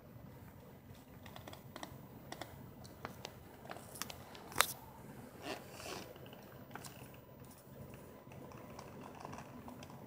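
Faint handling noise of a phone: scattered small clicks and taps, with one louder click about four and a half seconds in, over a low steady hum.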